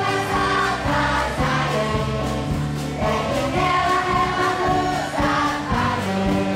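Children's choir singing a song with held, sustained notes, over a low instrumental accompaniment.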